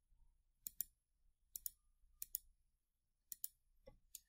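Faint computer mouse clicks, about one a second, each heard as a quick double tick of the button pressing and releasing, as points are picked one after another.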